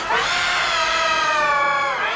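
A cartoon character's long crying wail, pitch-shifted by the 'G Major' meme effect. It is held for nearly two seconds, sinking slightly in pitch, and breaks off near the end.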